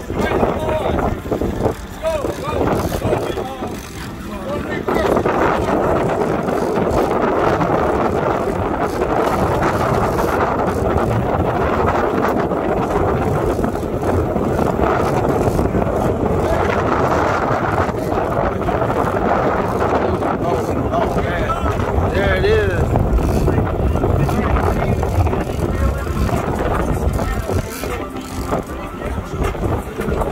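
Steady noise of a sportfishing boat at sea: engine running with wind and water, and indistinct voices of the crew over it.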